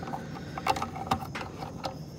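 A few light, irregular clicks and rattles of fingers handling a plastic multi-wire plug and its wires in an engine bay.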